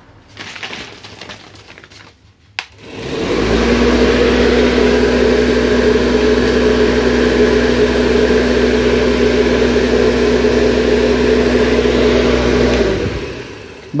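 Electric fan switched on with a click, quickly rising to a loud, steady motor hum with the rush of moving air. It runs evenly for about ten seconds, then winds down near the end.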